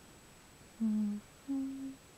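A woman's voice humming two short, low, steady notes in a row, the second a little higher than the first.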